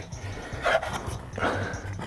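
A man breathing hard with effort, a couple of heavy breaths, while he forces a stubborn clip-held module loose.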